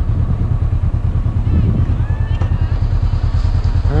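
Motorcycle engine running steadily while riding, a fast low pulsing heard from on the bike.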